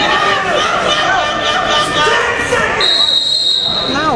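Spectators shouting across a gym, then a referee's whistle sounds one steady blast of about a second near the end, signalling a stop in the wrestling.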